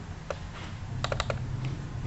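Sharp clicks at a computer's mouse and keys: a single click, then a quick run of three about a second in, and one more shortly after, over a low steady hum.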